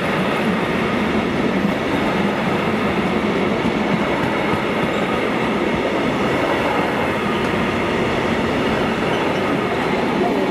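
A long freight train of covered box vans rolling past close by: a steady, loud rumble of steel wheels on rail that holds even throughout.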